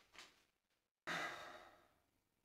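A brief scratch of a felt-tip marker on paper, then a moment of dead silence. About a second in comes a person's breathy sigh, which starts sharply and fades out over almost a second.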